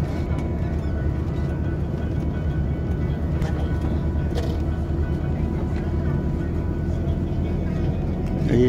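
Steady low engine and road drone heard from inside a moving bus, with faint music in the background.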